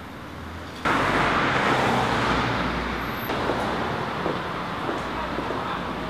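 Road traffic noise on a city street. It jumps abruptly louder about a second in with the rushing tyre noise of a passing car, which then eases off over the next few seconds.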